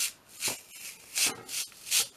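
Fabric being peeled off a very sticky sticker-paper backing, in about four short pulls, each a brief crackling rip.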